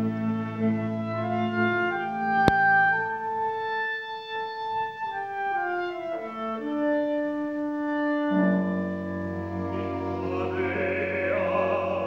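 Live operatic orchestra music, with a solo clarinet line of held notes moving step by step. There is one sharp click about two and a half seconds in, and the fuller orchestra swells in at about eight seconds.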